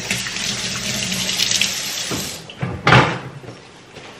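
Kitchen tap running into the sink for about two seconds, then turned off, followed by a couple of brief knocks.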